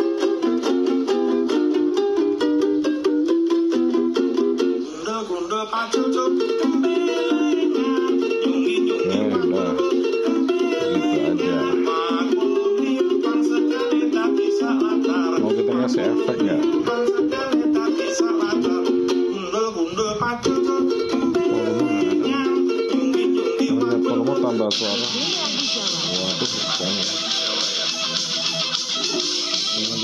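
Ukulele played in a quick run of plucked and strummed notes, a medley of Javanese songs. A steady high hiss comes in over it about five seconds before the end.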